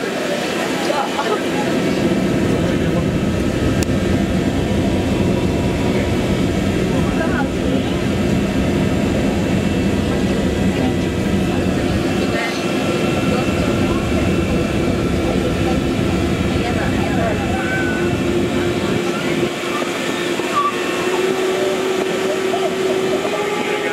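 Steady machinery drone inside a tourist submarine's passenger cabin, with a few held hum tones over a constant rumble.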